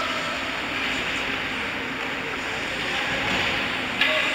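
Steady hiss of indoor ice-rink ambience during a hockey game, with no distinct impacts.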